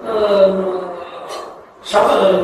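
A man's voice speaking into a microphone, trailing off, followed by a quick sharp intake of breath near the end as he resumes.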